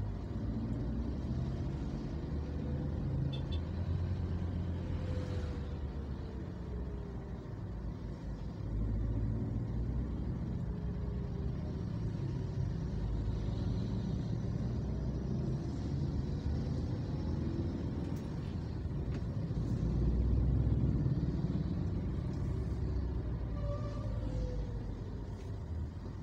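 Slow road traffic: a continuous low rumble of vehicle engines and tyres, with the pitch of passing engines rising and falling now and then.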